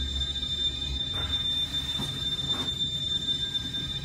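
Fujitec traction elevator car travelling down, with a steady high-pitched whine over a low rumble that eases about a second in. The owner finds it a little noisy and takes it to need lubrication.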